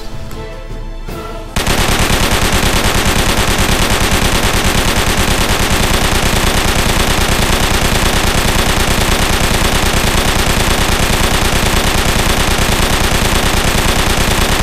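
Sustained automatic machine-gun fire: a loud, rapid, unbroken stream of shots that starts about a second and a half in and keeps going without a pause.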